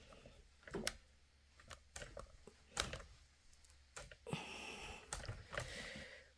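Handling noises: scattered light clicks and knocks, spread irregularly through the stretch, with a soft rustling from about four seconds in.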